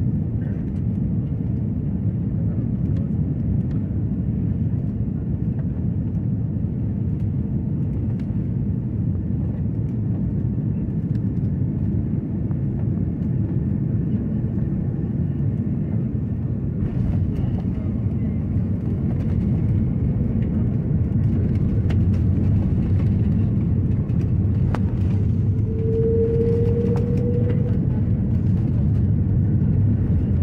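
Jet airliner cabin noise on landing: a steady low rumble of engines and airflow, with knocks and rattles from about halfway through as the wheels meet the runway. The rumble grows louder in the last third, and a short rising whine comes near the end.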